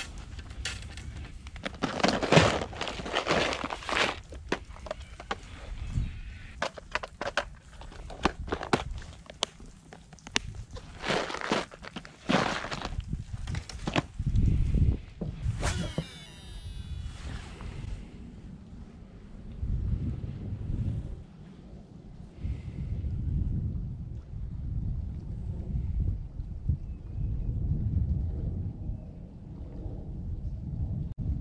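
Clicks, knocks and rustles of fishing tackle being handled for the first half, a brief sweeping whir around the middle, then a steady low wind rumble on the microphone.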